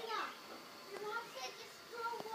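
Faint voices of children playing and calling out, in high calls that rise and fall in pitch.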